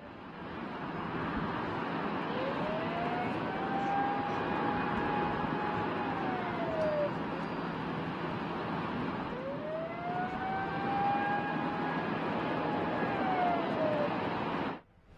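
Test-stand warning siren wailing twice, each wail rising, holding and falling away over about five seconds, signalling the countdown to an RS-25 rocket engine hot-fire test. Under it runs a steady rushing noise.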